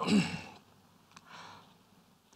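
A man's voice trailing off, then a pause holding a faint breath and a small click.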